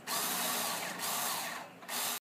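Toy power drill whirring in one long run that fades out about one and a half seconds in, then starts again just before the end.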